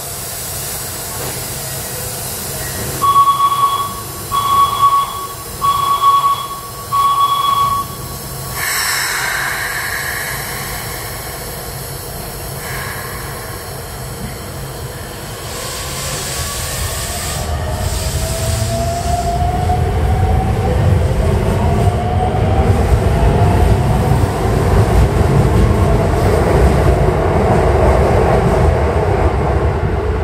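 An electronic beep sounds four times in even succession. Then a Keikyu train's rumble builds and grows louder, with a motor whine rising in pitch as it gathers speed.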